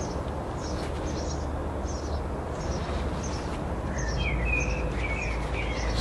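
Small birds singing: a short high chirp repeated about twice a second, joined about four seconds in by a warbling phrase, over a steady low rumble.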